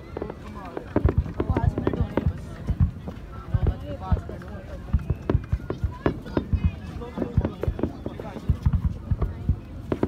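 Aerial fireworks display: a dense, irregular run of bangs, several a second, with a crowd of spectators chattering.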